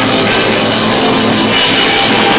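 Rock band playing live, with electric guitar and a drum kit, loud and steady.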